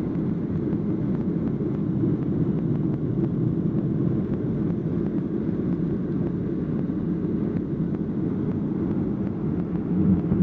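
Steady low rumble of jet engines and rushing air, heard inside the passenger cabin of a Boeing 737 airliner in flight.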